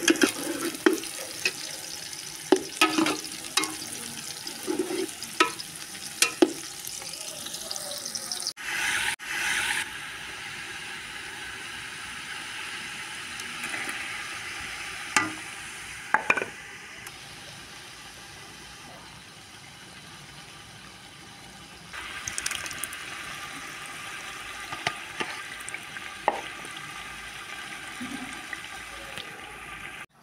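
Food frying in oil in an aluminium pot, sizzling steadily: chopped bitter gourd stirred with a metal ladle that clinks and scrapes against the pot many times in the first several seconds. Later it is meat and tomatoes frying, with a few more clinks.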